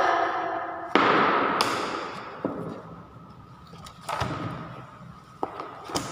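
A handful of sudden knocks and thuds, the loudest about a second in and the others spread through the rest, each ringing on and fading in a reverberant room.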